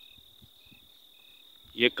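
Faint insects chirping: a steady high-pitched buzz with short chirps repeating about twice a second.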